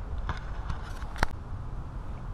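Low, steady outdoor background rumble with one sharp click just over a second in.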